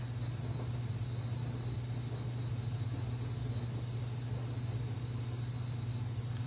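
A steady low background hum with a faint even hiss, unchanging throughout.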